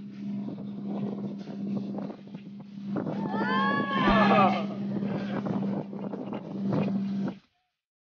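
Motorboat engine running steadily with water rushing past, and a person whooping about halfway through. It all cuts off suddenly near the end.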